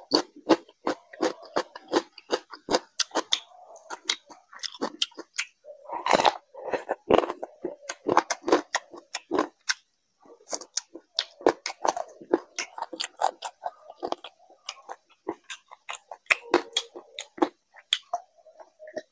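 A person chewing curry-soaked food close to the microphone, with a rapid, irregular run of wet mouth clicks and lip smacks, several a second. There is a short pause about halfway through.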